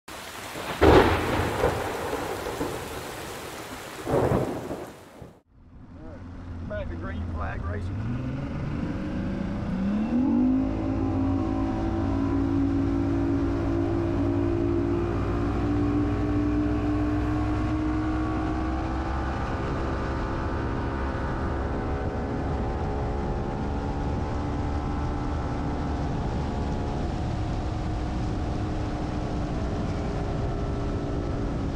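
Two loud thunderclaps a few seconds apart. Then a bass boat's outboard motor throttles up, its pitch rising for a couple of seconds, and settles into a steady cruise.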